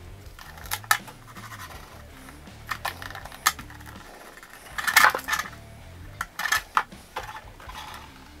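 Scattered light clicks and taps of a clear polycarbonate RC bodyshell and a card template being handled, with a marker pen tapping on the shell. The loudest cluster comes about five seconds in. Quiet background music runs underneath.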